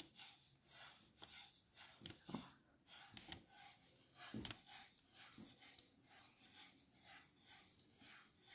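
Faint, soft rubbing of yarn being wound round and round a plastic DVD case, a light brushing stroke repeating a couple of times a second.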